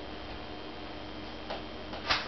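Steady low room hum with one short, light click about one and a half seconds in.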